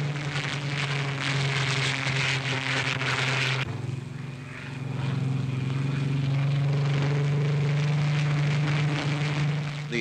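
Four-engined propeller aircraft flying low overhead, its engines giving a steady drone. The sound changes abruptly just under four seconds in, dips briefly, then swells back up.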